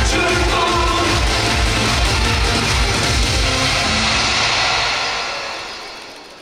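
Upbeat Korean pop song with a steady beat and singing, fading out over the last second or two as the song ends.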